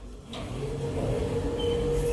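A lift running, with a steady mechanical hum that starts and grows louder about half a second in, as its automatic sliding doors operate.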